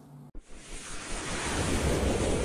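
Logo-animation sound effect: a rushing whoosh that starts abruptly about a third of a second in and swells steadily louder.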